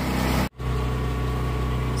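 A steady low hum of a running motor or engine, which cuts out for a moment about half a second in and then carries on unchanged.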